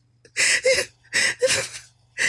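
A man's breathy, near-silent laughter after laughing himself to tears, coming in four short bursts in two pairs.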